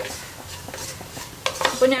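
A spatula stirring and scraping a thick onion-and-spice masala around a nonstick pan, with a faint sizzle of the masala frying in its oil. A couple of light knocks of the spatula against the pan, and a woman's voice starts near the end.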